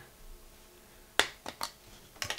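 A sharp plastic click a little over a second in, then two lighter clicks shortly after, from a Nokia N97 handset and its removed battery cover being handled.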